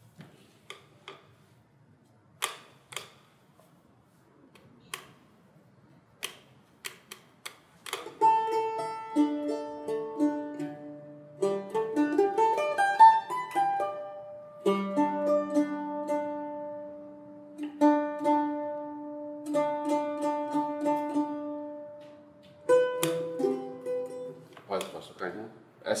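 Bandolim (Brazilian mandolin) played solo: a few scattered plucked notes at first, then from about eight seconds in a slow melody of long held notes and chords.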